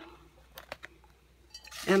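Mostly quiet handling sounds, with three faint short clicks close together about half a second to a second in, as a journal is laid over a glass bowl of folded paper slips. A voice starts right at the end.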